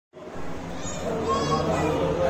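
Background chatter of several people's voices, children among them, talking over one another with no clear words.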